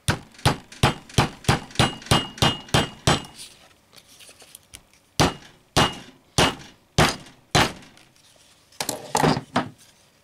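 Hammer striking brass rivets on an anvil, setting them through leather: a quick run of about ten blows with a faint metallic ring, a short pause, then five slower, evenly spaced blows. A few lighter knocks follow near the end.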